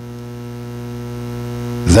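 Steady electrical mains hum, a low buzz with a stack of evenly spaced overtones, slowly growing louder; a man's voice comes back in right at the end.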